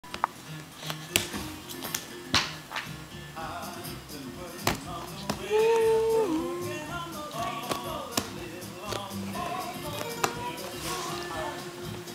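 Music playing steadily in the background, with a loud held note about halfway through. Sharp taps cut through it now and then, the loudest few in the first couple of seconds: small hands slapping a leather ottoman.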